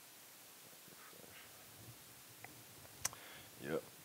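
Quiet room tone, then a single sharp click about three seconds in from the laptop being operated, with a fainter tick just before it.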